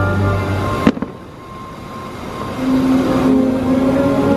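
Fireworks show music cuts off with a sharp firework bang about a second in, followed by a couple of smaller cracks. The music then returns softly with a held low note, swelling near the end.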